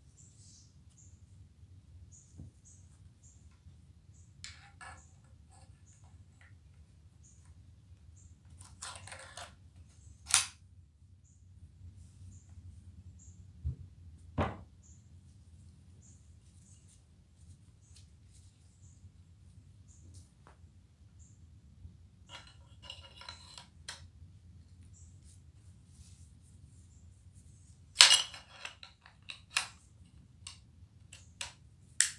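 A rag rubbing over an 1851 Springfield smoothbore musket, with scattered metallic clicks and knocks as the gun and its parts are handled. The sharpest knock comes near the end. A low steady hum runs underneath.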